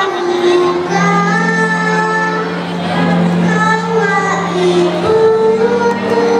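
A large choir of schoolchildren singing a song together, one melody carried by many young voices.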